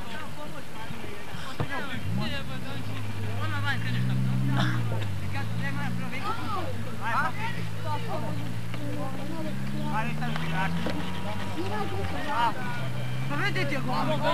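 Scattered distant shouts from players and onlookers. From about three seconds in, a motor vehicle's engine drones steadily underneath, its pitch rising a little and then easing back.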